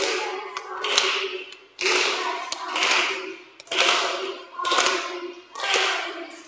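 A group of children singing together with claps as part of the song's actions, loud pulses coming about once a second.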